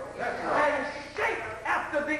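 Speech: a man's voice talking, continuing the same delivery heard before and after.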